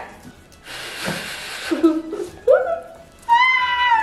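A long breath blown into cupped hands to warm cold fingers, about a second in. It is followed by a few short high-pitched voiced sounds, the strongest a steady whine near the end.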